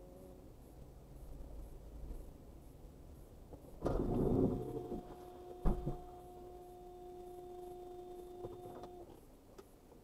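A sudden loud bump, then a car horn sounding one steady note held for about four and a half seconds before it cuts off, with a sharp knock partway through.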